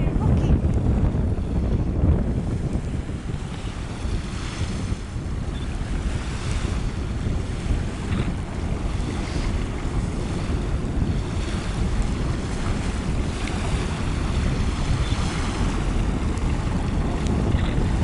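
Wind buffeting the microphone in a steady, uneven low rumble, over the wash of open water.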